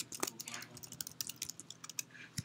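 Typing on a computer keyboard: a quick, irregular run of faint keystroke clicks as a word is typed.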